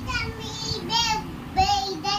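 A child's high voice in short sing-song calls without clear words, the loudest one near the end.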